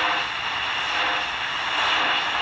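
Steady static hiss from a Tecsun R9012 portable shortwave receiver's speaker, tuned to the 80-meter amateur AM band with no voice coming through. The listener puts the noise down to an image of a 4 MHz CODAR signal interfering in this single-conversion receiver.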